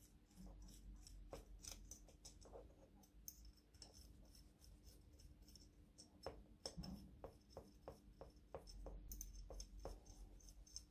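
Faint small metal clicks and scrapes from tiny metal clamps being handled and fitted onto a 1/14-scale metal Dayton spider truck wheel. A little past the middle comes an even run of about a dozen ticks, roughly three a second.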